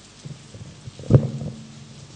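Microphone handling noise: a sharp low thump about a second in, with a few softer knocks before and after it.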